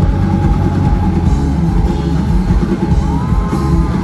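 Live rock band playing loud: electric guitar, drum kit and bass guitar together, with a few gliding guitar notes in the second half, heard from the audience.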